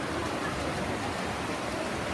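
Swimmers splashing and kicking through the water in a race, heard as a steady wash of splashing noise that echoes around an indoor pool hall.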